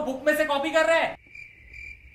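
A man's voice for about the first second, then a cricket chirping: one steady high trill with faint pulses above it.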